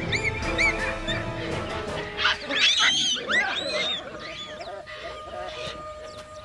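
Baboon squeals and screams: a few short shrill calls, then a louder burst of screeching about two seconds in, over background music with held notes.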